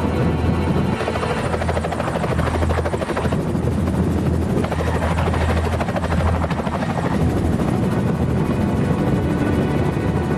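Helicopter rotor chopping steadily over a low, even engine drone.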